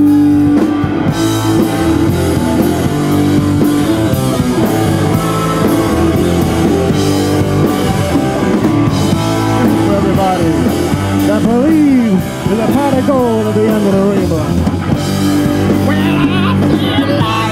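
Live rock band playing loud: electric guitar, bass guitar and drum kit, with notes that bend up and down in pitch about two-thirds of the way through.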